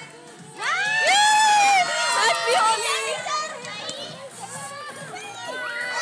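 Many young children shouting excitedly, several high voices overlapping at once. It starts about half a second in and is loudest over the next couple of seconds.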